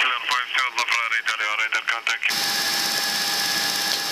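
A thin, radio-quality voice for the first two seconds, with the background cut away while it transmits. Then the steady flight-deck noise of the climbing Boeing E-3 Sentry returns: an even rush of air and engines with a fixed hum tone running through it.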